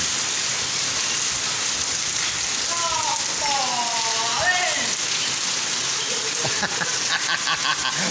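Heavy rain pouring steadily onto a wet paved lane full of puddles.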